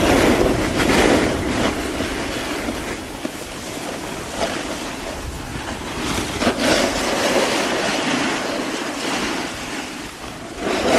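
Wind rushing over a camera microphone during a ski descent, mixed with the scrape of skis on packed snow, swelling and easing.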